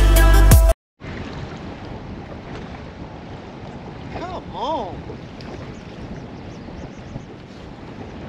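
Electronic music with a heavy beat cuts off abruptly less than a second in. Then steady wind buffets the microphone over choppy lake water on an open fishing boat, with one brief vocal sound near the middle.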